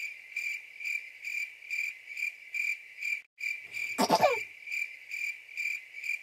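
Stock cricket-chirping sound effect: a steady, high chirp repeating about twice a second, with a brief break a little after three seconds in. About four seconds in, a short sound slides down in pitch over the chirps and is the loudest moment.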